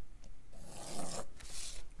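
Mechanical pencil drawn along the edge of a plastic drafting triangle on textured cold press watercolour paper: two strokes of scratching, the first starting about half a second in and the second right after it.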